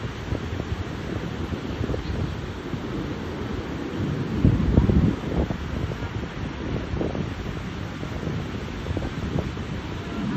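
Wind blowing on the microphone over the steady wash of ocean surf breaking on a sandy beach, louder for a moment about halfway through.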